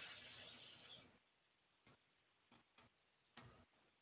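Near silence on a video-call line, with a brief faint rush of noise in the first second and a few faint clicks.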